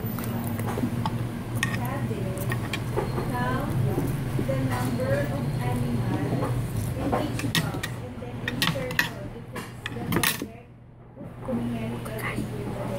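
Metal fork and spoon clinking and scraping against a ceramic plate of rice and sausage, in scattered short clicks, with a brief lull near the end.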